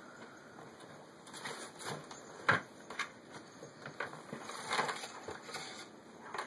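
A small plastic waste bin being pulled over: crumpled paper and tissue rustling and the bin and a plastic bottle inside knocking in a series of irregular clicks, the sharpest about two and a half seconds in.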